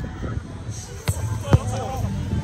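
A volleyball being struck by hand during play: two sharp thumps about half a second apart, the second the louder.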